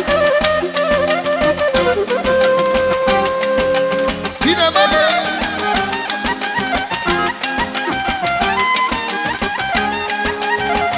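Live band dance music with a clarinet playing the melody over a steady, quick beat, loud and continuous.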